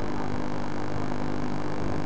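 A steady electrical hum with a constant background hiss, unchanging throughout.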